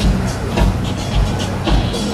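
Live amplified band playing: electric guitars and bass over a drum kit, with a steady kick-drum beat about twice a second.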